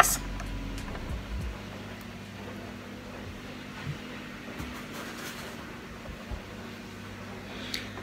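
Quiet kitchen room tone with a steady low hum, and a few faint knocks and rustles as the phone recording it is picked up and moved.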